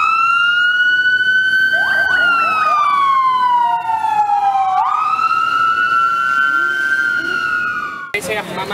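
Police siren wailing. The pitch climbs, holds, then glides slowly down for about three seconds before sweeping quickly back up and holding again. A burst of short rising yelps cuts in about two seconds in.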